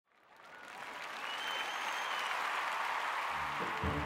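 Crowd applause fading in, with one long high whistle about a second and a half in. Near the end a rock band starts playing, its bass coming in under the clapping.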